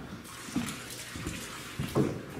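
Water sloshing and trickling around a floating dock, with soft footsteps on the deck walkway and a louder thud near the end.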